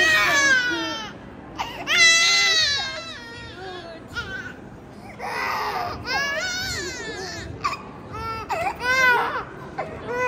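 Six-month-old baby crying just after having an ear pierced: a series of loud, wavering wails with short breaths between them.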